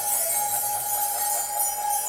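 Live ensemble music: one high note held steady over a continuous shimmer of jingling, chiming percussion.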